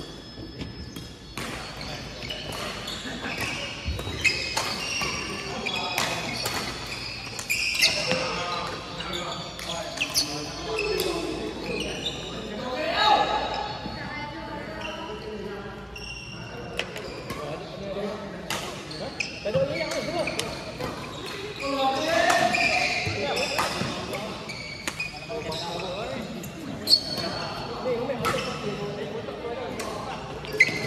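Badminton rackets striking a shuttlecock during doubles play, sharp hits at irregular intervals, echoing in a large hall, with voices mixed in.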